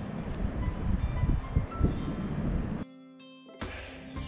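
Wind buffeting the microphone over soft background music with held tones. A little before three seconds in, the wind noise cuts off abruptly, leaving the music alone for under a second before the wind returns.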